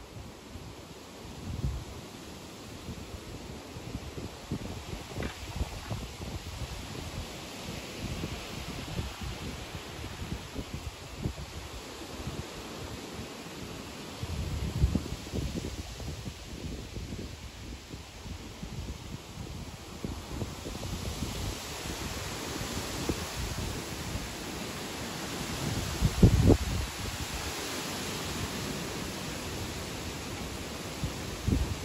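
Strong wind gusting through the backyard trees, leaves rustling, with gusts buffeting the microphone. The rustling swells about a third of the way in and again for most of the second half, and the loudest gust hits the microphone a few seconds before the end.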